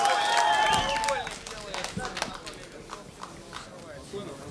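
Shouting from the crowd, including one long drawn-out yell, for about the first second, then quieter hall noise with scattered sharp knocks from the fighters grappling and striking on the ring canvas.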